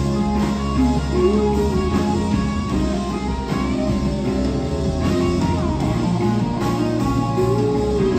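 Live rock band playing an instrumental passage led by electric guitars, with sustained chords and sliding guitar notes over the band.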